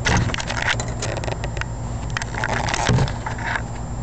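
Small metal clicks and scraping of a half-ball lock pick working the pins of a lock cylinder, with a couple of louder knocks, over a steady low hum.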